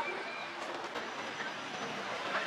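Busy city-street ambience: a steady wash of pedestrian and traffic noise with no distinct event.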